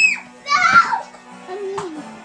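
A toddler's high-pitched squeal right at the start, then another excited vocal burst about half a second later, over background music.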